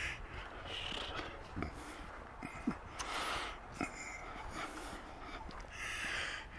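A walker's breathing close to the microphone, soft puffs about once a second, with faint footsteps on a snowy sidewalk.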